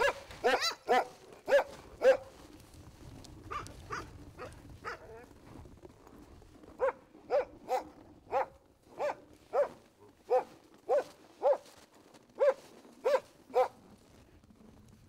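A dog barking over and over: a quick burst of barks at the start, a few fainter ones, then a steady run of single barks about every half second from halfway through.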